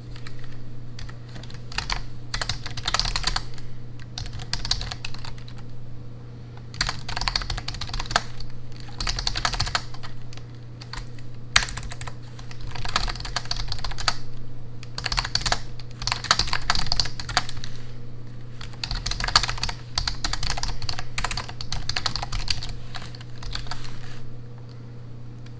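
Fingers typing on a backlit computer keyboard: the keys clatter in quick runs of a second or two with short pauses between, and one sharper single key strike comes about halfway through. A steady low hum lies underneath.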